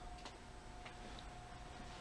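Faint, steady hum with a thin constant whine from a Black+Decker 1.5 hp variable-speed pool pump running at its low speed of 1200 RPM, drawing about 100 watts. A few faint ticks sound over it.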